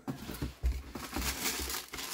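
A cardboard sneaker box and a paper bag being handled, with paper rustling and crinkling and a few soft bumps.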